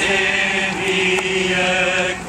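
A procession of people singing a hymn together, voices holding long, slow notes.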